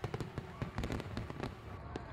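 Fireworks bursting and crackling: a quick, irregular run of sharp cracks and pops over a low rumble.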